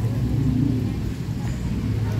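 A motor vehicle engine idling with a steady low hum.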